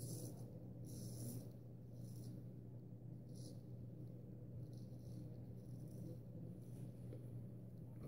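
Faint scraping of a carbon-steel straight razor cutting lathered stubble on the cheek: a series of short strokes, roughly one a second, over a low steady hum.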